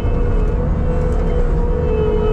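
Diesel track loader running steadily under work, a dense low rumble with a steady whine riding over it.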